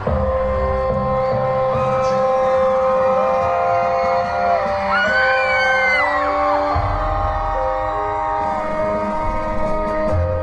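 Dark orchestral intro tape over a concert PA, with long held string-like notes. A deep bass layer drops away for a few seconds midway and comes back later.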